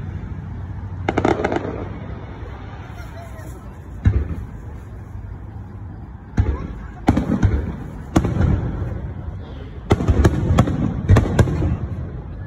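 Aerial firework shells bursting overhead: scattered booms, then a quick run of several bangs in the last couple of seconds.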